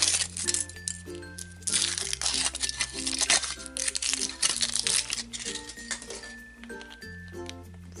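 Foil wrapper of a Kinder Surprise chocolate egg being peeled off and crinkled in several irregular bursts, over background music with a steady bass line and a repeating melody.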